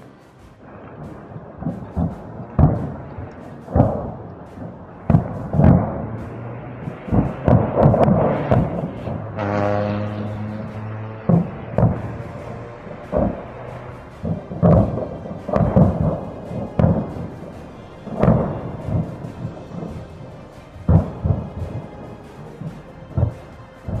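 Ammunition cooking off in a burning depot: a rapid, irregular series of booms and thuds with rumbling tails, some loud and sharp, others dull. About ten seconds in, a steady held tone sounds for around two seconds over the blasts.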